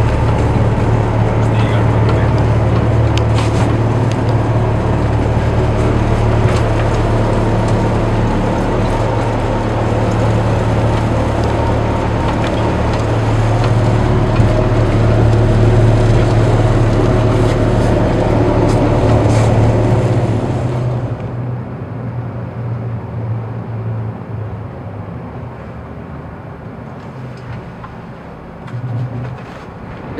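Twin Scania diesel engines of a patrol boat running hard at high speed, close to 40 knots: a loud steady low drone over the rush of water and wind. About two-thirds through, the sound abruptly turns duller and quieter and then keeps fading as the boat slows.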